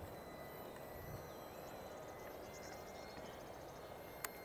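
Faint wind noise on the microphone, with a thin, faint steady high tone through it.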